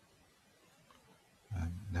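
Near silence, room tone only, then a man starts speaking about a second and a half in.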